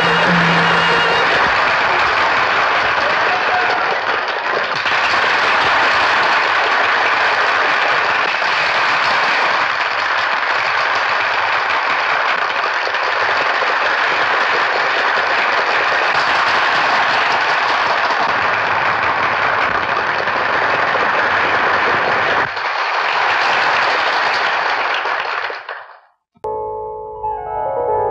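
Audience applause: dense, steady clapping from a large seated crowd after a song ends. The song's last held note dies away in the first second, and the clapping cuts off suddenly near the end.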